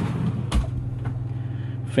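A single sharp click with a low thump about half a second in as the cabinet-style closet door is unlatched and swung open, over a steady low hum.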